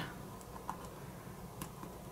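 A few faint clicks of a fingertip and fingernail pressing a small adhesive insert down onto a textured rubber grip sheet, over low room hiss.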